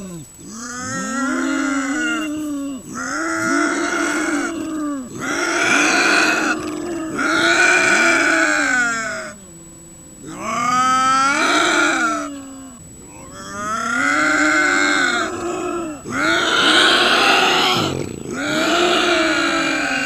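Two bobcats yowling at each other in a standoff: a series of about eight long, wavering, drawn-out calls, each lasting around two seconds with short pauses between.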